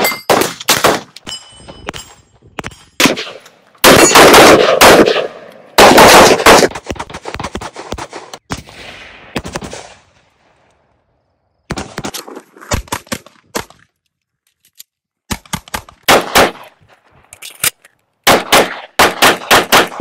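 Firearm shots in rapid strings, several quick shots at a time separated by pauses, with the loudest strings in the first seven seconds or so. Two short stretches of near silence fall about ten and fourteen seconds in.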